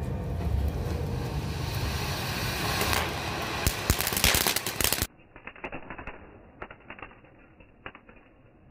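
A crackling fountain firework spraying three jets of sparks with a loud hiss that builds, with a few sharp cracks around four seconds. About five seconds in the sound turns suddenly quieter and muffled, a slowed-down crackle with scattered pops.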